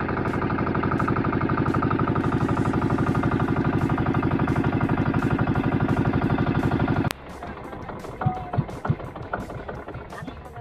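Engine of a motorised outrigger boat (bangka) running steadily under way, with a fast, even chugging pulse. It cuts off abruptly about seven seconds in, leaving only quieter, scattered knocks.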